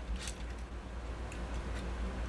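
Plastic parts of a Transformers Siege Megatron action figure clicking and rubbing as its arms are folded back during transformation: a short scrape near the start, then a couple of light ticks.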